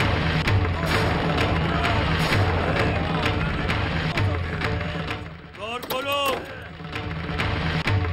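Dramatic background score with a steady, low drum beat and regular percussive hits. About three-quarters of the way through, the drums drop out briefly under a short burst of gliding, wavering tones, then the beat resumes.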